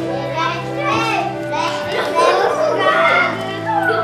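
A group of small children's voices calling out and chattering, mixed with an adult's voice, over instrumental music that holds steady low notes.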